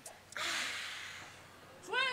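A long breathy hiss of exhaled breath, starting suddenly about a third of a second in and fading away over about a second and a half. Chanted speech begins again right at the end.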